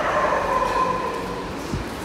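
A dog whining: one long, high whine that falls slightly in pitch and fades after about a second, followed by a short low thump near the end.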